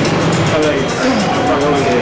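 Indistinct voices talking over music with a quick, steady percussion beat.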